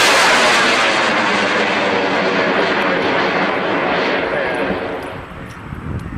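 Aerotech M1315W White Lightning 98 mm rocket motor burning as a large high-power rocket climbs away: a loud, steady rushing noise that fades gradually over the last two seconds, echoing off the trees.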